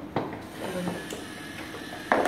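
Small electric motors of a LEGO Mindstorms EV3 robot running faintly as it drives across a wooden floor, with one sharp click just after the start.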